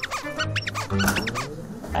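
Background music with a quick run of short, high squeaky cartoon sound effects, each chirp rising and falling in pitch.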